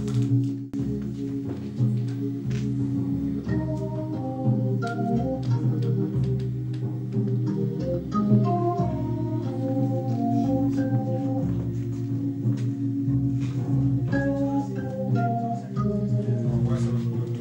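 Playback of a recorded jazz take through studio monitors: held organ chords over pulsing bass notes, with light cymbal ticks. About three to four seconds in, a melody line of short notes enters above the chords.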